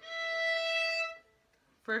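A violin's open E string bowed as one sustained, steady note lasting about a second, then stopping. It is played as a pitch guide for matching the fourth-finger E in a two-octave A major scale.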